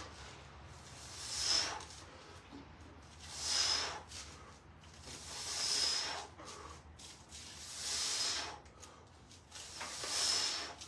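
A man's forceful breaths hissing out through the teeth in time with barbell bench-press reps, four strong exhales about two seconds apart.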